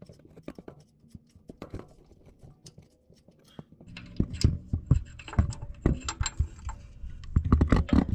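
Light metallic clicks and scrapes as a large differential-bracket bolt is spun out by hand and pulled free, getting louder and more frequent from about halfway.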